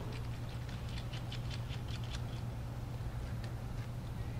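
Faint rapid ticking and scratching of a small precision screwdriver turning a tiny screw out of a Samsung Galaxy S3's motherboard, thickest in the first two seconds with a few stray ticks later, over a steady low hum.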